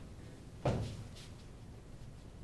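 Felt blackboard eraser rubbing chalk off a chalkboard in a few strokes, starting sharply a little over half a second in and fading to fainter wipes.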